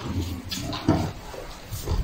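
Kick scooter's small wheels rolling over a tiled floor: an uneven low rumble with a couple of knocks.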